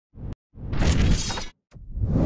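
Sound effects of a TV news intro sting, with a crashing, shattering sound: a short hit, then a loud crash lasting about a second, and another crash beginning near the end.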